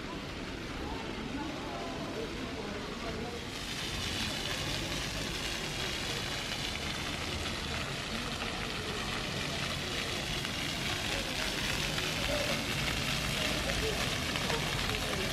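Steady hiss and splash of water spray from ground-level fountain jets, coming in about three seconds in, with people's voices in the background.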